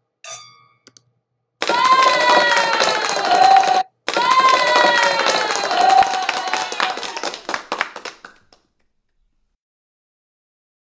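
Wine glasses clinking once in a toast, a brief ring. Then a loud closing sound effect plays twice: rapid clicking under a pitched sweep that repeats the same shape, the second pass longer and trailing off about eight and a half seconds in.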